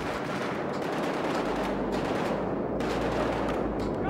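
Rapid gunfire, many shots packed too close together to count, from guns fired in a staged battle scene. A low rumble joins under it about a second and a half in.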